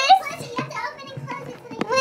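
A loud, high-pitched young woman's exclamation ending just at the start, then quieter voices chattering.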